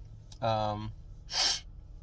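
A man's voice: a short held hesitation sound, then a quick, hissy intake of breath about a second and a half in.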